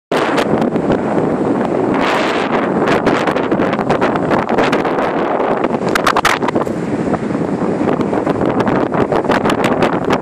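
Wind buffeting the microphone hard and steadily, with many short crackles and knocks through it.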